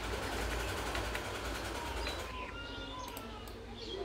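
Steady low background hum and hiss, with an animal giving a few short high-pitched calls from about halfway through.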